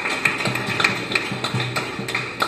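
Live jazz combo playing, with low plucked double bass notes under sharp handclaps in a steady rhythm, about three a second.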